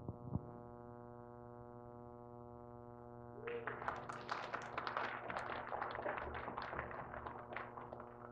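A soft chord held steadily on an electronic keyboard, like a synth pad. From about three and a half seconds in, a busy patter of rustling and small knocks from people moving about joins it and stops shortly before the end.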